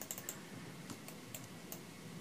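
Faint, irregular clicking of a computer mouse and keyboard, a handful of light clicks over low room noise.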